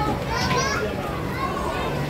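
Children playing and people talking in the background, with a high child's voice standing out about half a second in.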